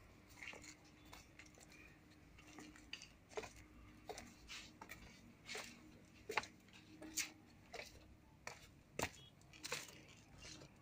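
Faint footsteps of someone walking, a soft scuff or tap roughly every half second to a second.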